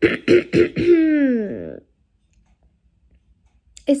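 A woman clearing her throat: a few short rough rasps, then a voiced sound gliding down in pitch.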